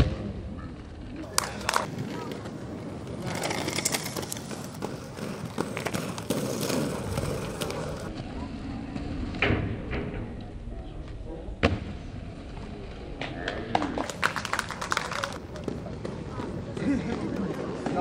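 Inline skate wheels rolling on asphalt, broken by several sharp knocks of skates striking the takeoff ramp and landing back on the ground, with voices in the background.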